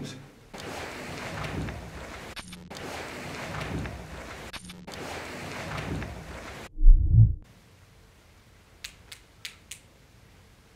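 Hissy, boosted replay of faint sounds taken for footsteps, broken twice by short gaps, then a single deep thud about seven seconds in and a few sharp clicks near the end.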